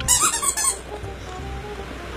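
A rubber squeaky toy ball gives one short, high squeak as a small dog bites down on it, lasting under a second at the start, over steady background music.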